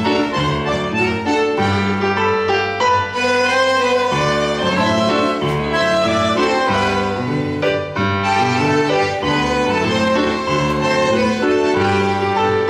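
Tango orchestra playing the instrumental opening of a milonga: bowed violins, bandoneón, plucked double bass and electric piano together, with no singing yet.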